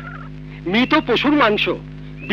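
A man's voice says a short phrase about halfway through, rising and falling quickly in pitch, over a steady low hum in the soundtrack.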